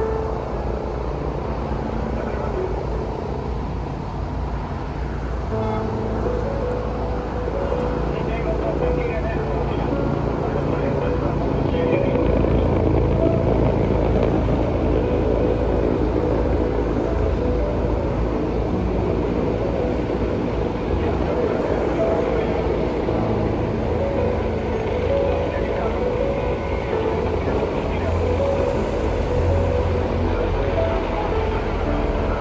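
Steady vehicle noise with indistinct voices.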